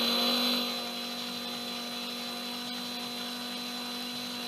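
Cordless drill running at steady speed, spinning a homemade wire-mesh parts basket mounted on a steel rod in its chuck: a steady motor hum with a high whine above it. It drops a little in loudness just before a second in and then holds steady.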